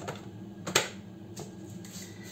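Lid and steel jug of a Cecotec Mambo kitchen robot being clicked into place on its base: three sharp clicks, the loudest about three-quarters of a second in.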